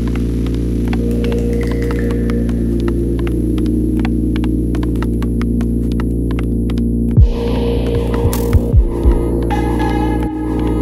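Dark ambient electronic music: a loud, steady low drone of held synth tones with faint clicks over it. About seven seconds in, deep thumps and higher tones come in.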